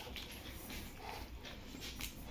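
Faint scraping and light clinks of a steel spoon stirring yogurt raita in a steel bowl.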